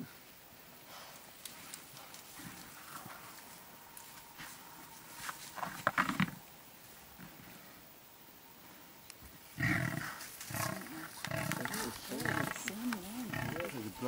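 Two African buffalo bulls fighting, with deep animal calls. There is one loud burst about six seconds in, then a busier, louder stretch of calls over the last four seconds, mixed with people's excited voices.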